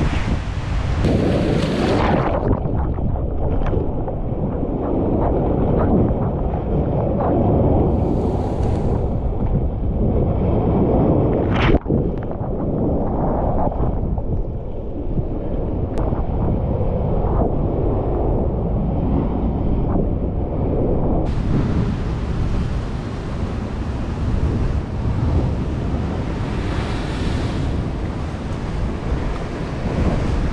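Sea surf washing and breaking against rocks, a dense steady rumble with wind on the microphone. For a long stretch in the middle the sound is muffled and dull, then turns clearer again about two-thirds of the way through.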